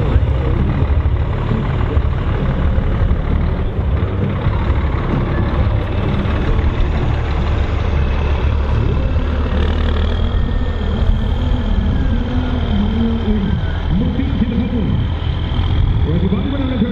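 Scania 114G 340 truck's six-cylinder diesel engine running as the tractor unit drives off across a dirt and grass track. A steady high tone joins about ten seconds in.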